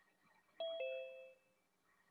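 A two-note electronic ding-dong chime, a higher note and then a lower one about a fifth of a second later, both ringing out within about a second.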